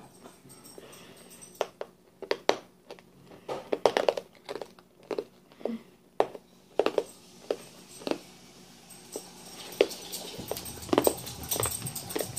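A child's mouth noises while he holds a Warheads extreme sour candy in his mouth: irregular short clicks and lip smacks with soft breathy sounds.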